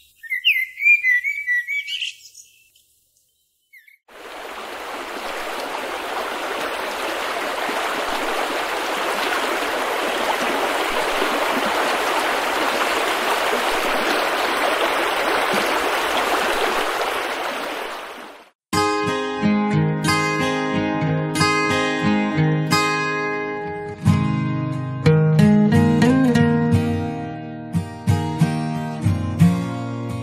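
Birds chirping briefly, then after a short gap a steady rushing noise that swells in and fades out over about fourteen seconds. Acoustic guitar music then starts suddenly, with plucked notes and a strummed beat.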